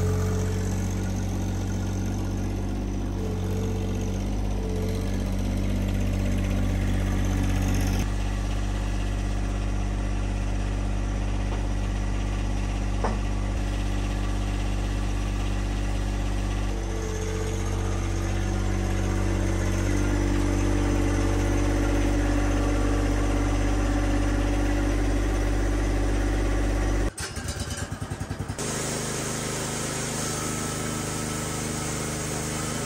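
John Deere sub-compact tractor's diesel engine running steadily while its front loader lifts and carries a log, the engine note shifting higher partway through. Near the end the sound breaks up briefly before the engine settles again.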